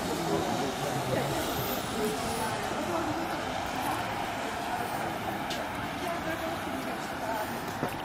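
Town street ambience: indistinct conversation of passers-by over a steady wash of traffic noise.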